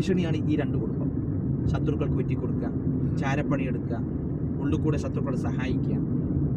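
Steady engine and road noise inside a moving car's cabin, with a person talking in short snatches over it.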